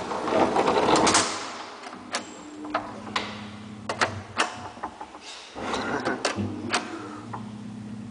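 Old Flohrs traction elevator's metal landing door and collapsible scissor gate being shut, with a loud rush of noise and then a string of sharp clicks and clanks. A steady low machine hum comes in during the second half as the lift gets under way.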